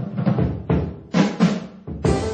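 Jazz drum kit playing a short solo break: a few separate drum and cymbal hits with gaps between them while the other instruments drop out, the full band coming back in at the very end.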